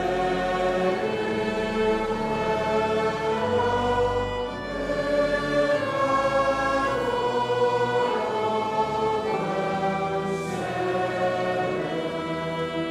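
Slow church music in held chords over a deep bass line, each chord changing every second or two.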